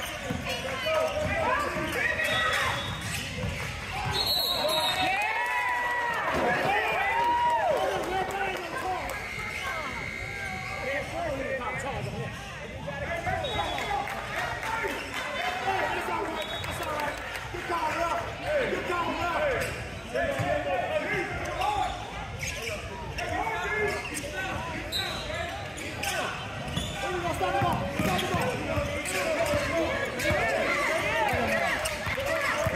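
Basketball game on a hardwood gym floor: a ball bouncing repeatedly as it is dribbled, with players shouting and calling out over scattered thuds of play.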